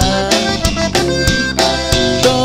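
Live Tejano conjunto band playing: a button accordion carries the melody over a steady drum-kit beat and guitar.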